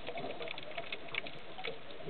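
Underwater sound around scuba divers, with their exhaled regulator bubbles rising: a steady hiss dotted with many small, irregular clicks and crackles.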